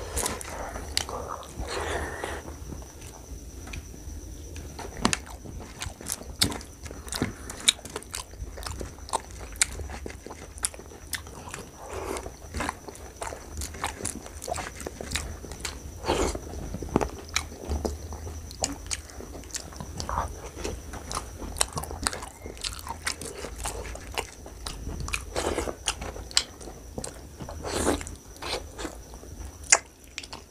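Close-miked eating: a person chewing and biting mouthfuls of rice and mutton curry eaten by hand, with many sharp mouth clicks throughout. A faint steady high-pitched tone runs underneath.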